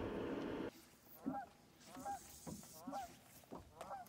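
Geese honking repeatedly, about one call a second. Before them comes a steady rush of wind noise that cuts off suddenly under a second in.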